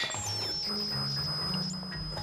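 Cartoon sound effect of a television broadcast breaking up with interference: a quick falling electronic sweep, then a steady high-pitched whine over low sustained tones.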